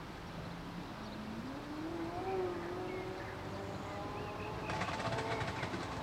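5-inch-gauge live-steam model train running on its track: a tone that rises in pitch and then holds, then a fast run of clicks in the last second.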